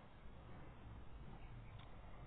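Near silence: a faint, steady low hum with no distinct event.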